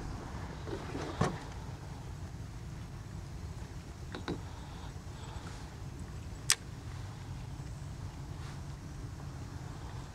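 Pedal drive of a Perception Pescador Pilot 12.0 kayak running with a low, steady whir as the kayak is manoeuvred to hold position in deep water. A few short clicks come through it, the sharpest about six and a half seconds in.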